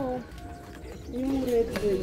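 A person's short wordless vocal sound, rising then falling in pitch, a little over a second in, after a falling voiced note at the very start.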